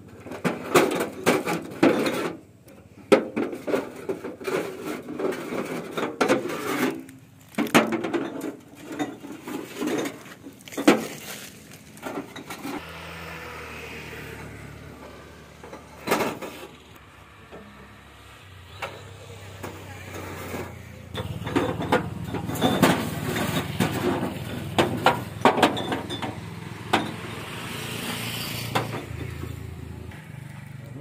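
Glass liquor bottles clinking and knocking as they are handled, amid voices. From about twelve seconds in, a vehicle engine idles steadily underneath.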